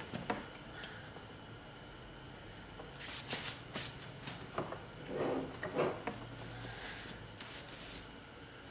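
Faint scattered knocks and rustles of hoses and fittings being handled on a workbench, in two small clusters a few seconds in, over a low steady hum.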